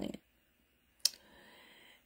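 A single sharp click about a second in, followed by a faint low hiss.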